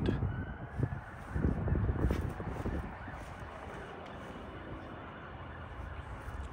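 Outdoor background with irregular low bumps and footfalls from a phone being carried around a parked car during the first few seconds, then a steadier faint hum.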